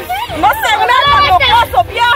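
Several girls and women shouting and shrieking over one another in a scuffle, high-pitched and overlapping, with no clear words.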